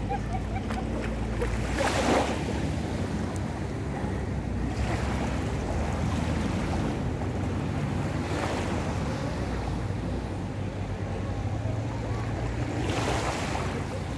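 Sea waves washing onto a beach, a swell of surf about every three to four seconds over a steady rush and a low rumble.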